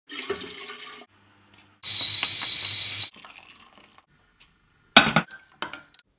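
Tap water running into a whistling kettle for about a second. Then the kettle whistles one steady high note for just over a second as the water boils. A sharp clink comes about a second before the end, followed by a couple of lighter clicks.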